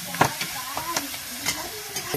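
Sliced onions frying in oil in a metal karahi over a wood fire, a steady sizzle, while a steel ladle stirs them, scraping and knocking against the pan a few times, the loudest knock just after the start.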